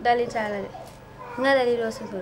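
A young woman crying in distress: two drawn-out wailing sobs with a bending pitch, one at the start and one about a second and a half in.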